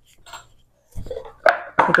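A small spice bottle picked up and handled on a kitchen countertop: a soft thump about a second in, then a sharp click half a second later.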